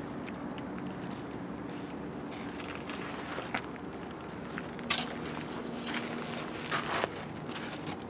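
Light handling noises in a truck engine bay: a few short clicks and scrapes as the engine oil dipstick is pulled out and handled, with leather jacket rustle, over a faint steady background hum.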